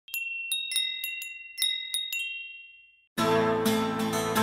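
A logo sting of bright, high chime strikes, about eight in two seconds, each ringing on and the whole fading out. A little after three seconds in, guitar music begins.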